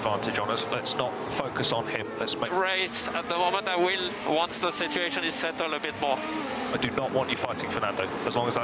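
A voice speaking over the sound of Formula 1 cars on track, their engines rising and falling in pitch.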